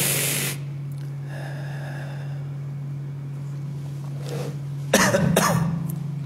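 A man coughs twice in quick succession about five seconds in, after a short rush of breath at the start, over a steady low hum.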